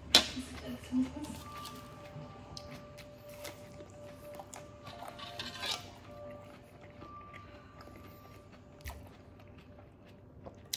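Salad being eaten: sharp clicks of a metal fork against a ceramic bowl and the crunch of lettuce being chewed, the loudest click right at the start and another about a second in. Faint music plays underneath throughout.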